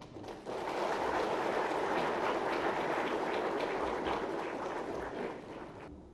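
Audience applauding, swelling about half a second in and dying away near the end.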